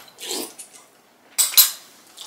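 Eating sounds at a table: a spoon against a small ceramic bowl, with a soft mouth sound from eating off the spoon early on and a sharp clink-scrape about a second and a half in.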